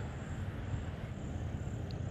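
Steady outdoor background noise: a low rumble under a soft hiss, with no distinct event except a brief faint high tick near the end.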